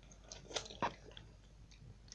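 Sour candy spray bottle pumped into the mouth: two short, sharp spritzes about half a second and just under a second in, then faint mouth sounds.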